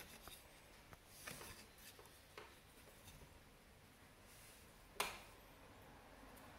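Near silence, with faint rustling and rubbing of yarn as fingers pick up and wrap groups of warp threads on a rigid heddle loom. A single sharp click comes about five seconds in.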